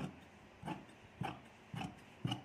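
Large tailor's shears cutting through a strip of cotton fabric on a table: four short crunching snips about half a second apart as the blades close and are pushed forward along the cut.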